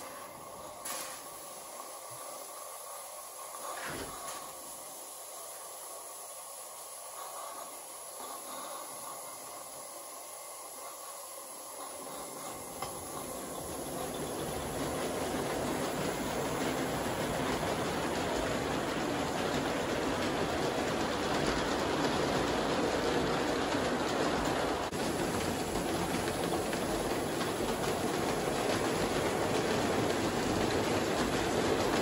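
Roundhouse Sandy River & Rangeley Lakes No. 24 live steam model locomotive hissing softly as it moves, then the train of freight cars rolling on the 32 mm gauge track. The rolling noise grows louder about halfway through and stays steady.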